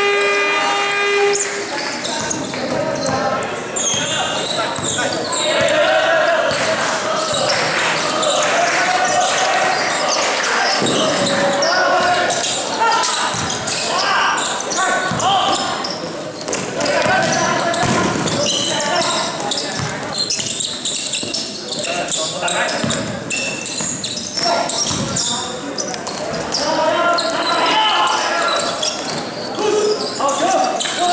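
Basketball game in a gym: the ball bouncing on the hardwood court amid players and spectators calling out, in a reverberant hall. A low buzzer sounds at the start and cuts off about two seconds in.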